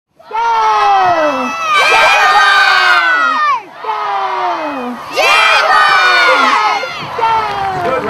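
A group of children shouting together, loud, in about five long cries one after another, each falling in pitch.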